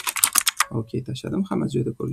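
Typing on a computer keyboard: a quick run of keystrokes in the first half-second, then scattered keystrokes, as code is entered in an editor.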